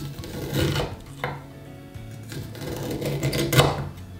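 A kitchen knife slicing the kernels off an ear of raw corn on a wooden cutting board: rasping downward strokes along the cob, each swelling as the blade cuts and stopping sharply at the board. There are about three strokes, the last one longer and the loudest.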